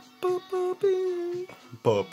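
A person humming a slow tune to puppies in three short held notes, the last the longest, with a lower singing voice coming in right at the end.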